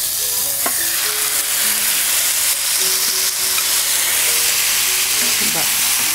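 Marinated meat tipped into hot oil in a non-stick frying pan, sizzling loudly and steadily, then stirred with a wooden spatula.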